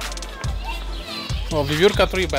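Children's voices and chatter of zoo visitors, with one voice rising and falling clearly as it says a few words near the end, over a steady low rumble.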